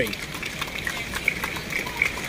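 Steady rain falling, with many small irregular ticks of drops hitting umbrellas.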